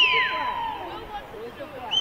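Referee's whistle: the end of a long blast that slides down in pitch at the start, and a second blast starting near the end, over faint spectators' voices.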